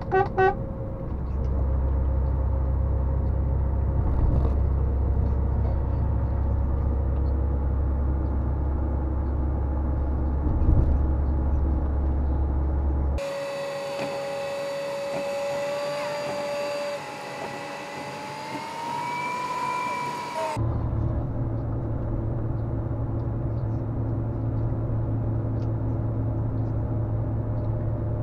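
Steady low in-cab drone of a Volvo FMX truck's diesel engine while the truck is cruising. For about seven seconds in the middle the drone cuts off abruptly and a few held tones, some slowly rising in pitch, take its place; then the engine drone returns.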